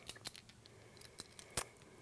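Faint, scattered light clicks and taps of earrings and small display stands being handled on a tabletop, the sharpest about one and a half seconds in.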